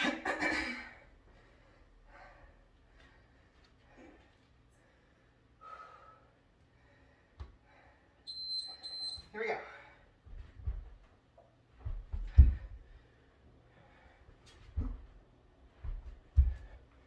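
Dull thuds of a body rolling back onto an exercise mat on a wooden floor, about every two seconds in the second half. A short, high electronic beep sounds a little over halfway through.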